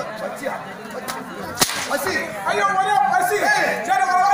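A single loud, sharp crack of a blow landing about one and a half seconds in, with a fainter smack just before it. Then men's voices resume.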